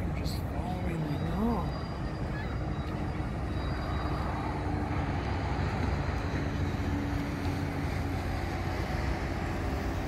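Steady low rumble of passing ship engines, without a horn.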